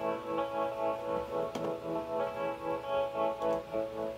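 Sustained guitar tones played through a small practice amp with an FV-1-based Arachnid pedal running a harmonic tremolo program. The volume pulses steadily about three times a second, with a fresh note attack about one and a half seconds in.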